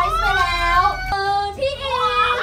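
High-pitched voices holding long, sung notes that slide up and down, with a short break about a second in.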